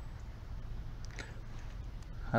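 An uneven low rumble on the phone's microphone, with a faint click just after a second in.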